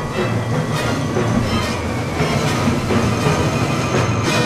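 Full symphony orchestra in a loud, dense passage of a modern ballet score: a thick sustained low mass of sound cut by irregular percussion strokes.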